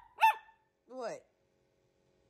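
Small dog giving two short barks a bit under a second apart, each falling in pitch, the second lower than the first.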